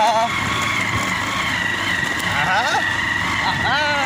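Motorcycle riding over a rough gravel road: a steady rush of engine, tyre and wind noise on the microphone, with snatches of a voice about halfway through and near the end.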